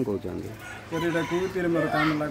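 A rooster crowing, starting about a second in, with a man's voice under it.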